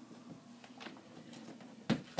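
Faint rustle of a hand iron being pressed over pleated fabric, then a single sharp knock near the end as the iron is set down on the work table.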